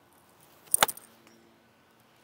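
A golf club striking a ball on a full swing: one sharp, crisp click of impact a little under a second in.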